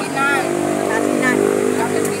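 A vehicle engine running steadily close by, a low hum that holds one pitch, with a few words of speech over it near the start.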